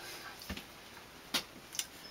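Light clicks and taps from LP record jackets being handled: three short, sharp ticks about half a second apart and more, over a quiet room.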